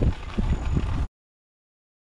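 Wind rush and rolling noise on a helmet-mounted microphone as a dirt bike coasts downhill with its engine shut off, cutting abruptly to dead silence about a second in.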